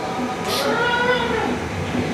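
A drawn-out vocal call, rising then falling in pitch over about a second, with a short hiss at its start.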